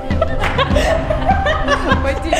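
A woman laughing in a loud run, starting about half a second in, over background music with a steady beat.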